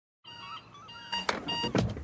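A moment of dead silence at the cut between two TV adverts. Then the next advert's soundtrack opens quietly, with short high chirping tones and two sharp clicks about a second and a half in.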